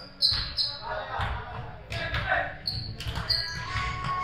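Sneakers squeaking on a hardwood gym floor several times, with a basketball bouncing and players calling out, echoing in a large indoor hall.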